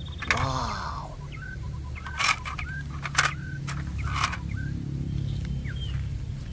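Outdoor ambience: a steady low rumble under short high bird chirps, with a few sharp clicks from handling. A brief voiced sound comes just after the start.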